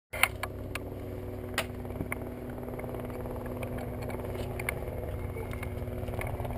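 Small aircraft engine idling steadily, with a few light clicks and knocks of handling, the sharpest just after the start and another about a second and a half in.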